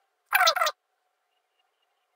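A bird's call: two short, harsh notes, each falling in pitch, about half a second in.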